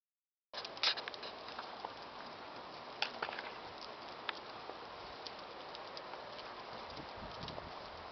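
Footsteps and camera-handling clicks from someone walking along a street: scattered sharp taps over a steady quiet hiss, starting about half a second in.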